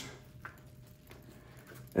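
Faint rustling of dry potting soil as hands loosen a plant's root ball, with one small tick about half a second in, over a low steady hum.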